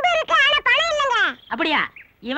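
A high-pitched voice calling out in short cries that rise and fall in pitch, with no clear words.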